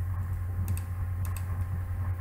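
Two pairs of short computer mouse clicks, press and release, about half a second apart, over a steady low electrical hum.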